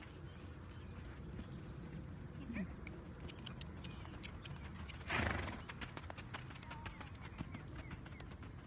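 Hoofbeats of a ridden horse moving over sand arena footing, the beats growing plainer in the second half as the horse passes near. A short loud rushing sound comes about five seconds in.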